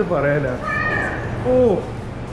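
A young child's high-pitched voice calling out, ending in a falling, meow-like cry about one and a half seconds in, over a steady low hum.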